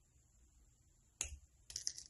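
Small side cutters snipping through thin jewelry wire: one sharp click about a second in, followed by a few lighter clicks near the end.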